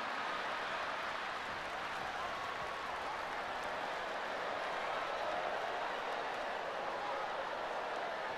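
Large audience applauding steadily, with a few voices faintly audible in the crowd.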